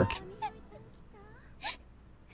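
Faint crying of women from an anime episode's soundtrack: a few short cries that bend up and down in pitch, about half a second in and again near the end, over soft music.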